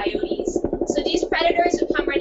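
Jackhammer running at the dig site: a rapid, steady hammering under a woman's speech.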